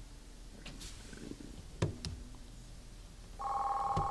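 A telephone line tone, two steady pitches held for well under a second near the end, as a call-in caller's line is connected. A single click sounds about two seconds in, over quiet room tone.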